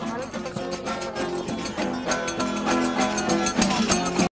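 Traditional Murcian cuadrilla music: acoustic guitars strummed in fast, even strokes under sustained melody notes, growing fuller and louder about two seconds in.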